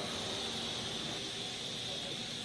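Steady machine hiss with a thin high whine running through it, the room noise of lab equipment.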